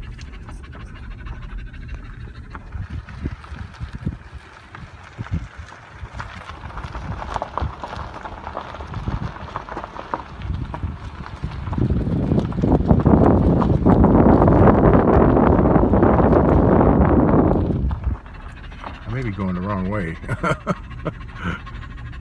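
A truck rolling slowly over a gravel road, heard from inside the cab: a low rumble with scattered knocks and crunches, and a louder rushing noise for about six seconds past the middle.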